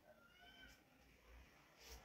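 Near silence: room tone, with one faint, brief high-pitched call about half a second in.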